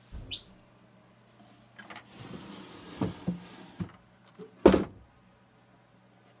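A wooden drawer being slid open and handled, with a soft scraping slide about two seconds in, a few light knocks, and one sharp knock near the end.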